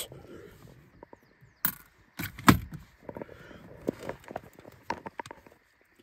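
Scattered clicks and knocks of handling inside a car, the loudest about two and a half seconds in.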